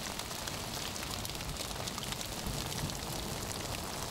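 Heavy rain falling steadily: an even hiss peppered with many small drop ticks.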